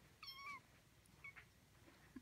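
Very young kitten giving one short, high-pitched mew about a quarter second in, the pitch dipping at its end, then a much fainter brief squeak about a second later.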